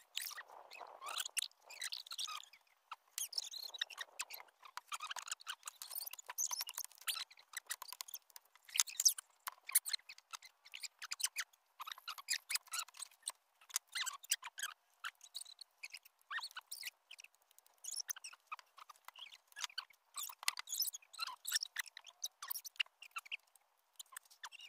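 Irregular small wet clicks, smacks and crunches of people eating durian flesh close by, mixed with the scrape and crack of a knife working open spiky durian husks.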